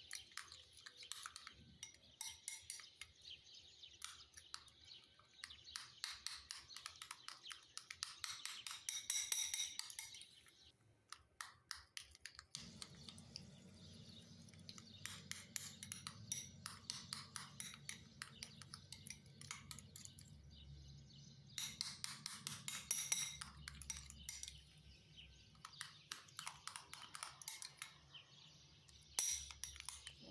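Metal spoon scraping and clinking against a ceramic bowl while stirring a wet strawberry-and-yogurt paste, in quick irregular strokes that pause briefly about ten seconds in. A low steady hum comes in about twelve seconds in.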